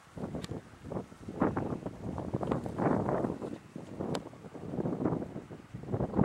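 Wind buffeting the microphone in irregular gusts, with a couple of sharp clicks from the camera being handled.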